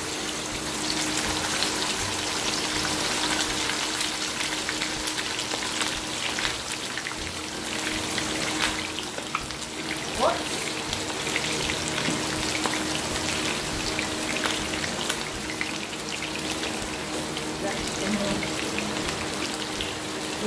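Pork chop shallow-frying in hot oil in a pan: a steady sizzle dense with small crackling pops.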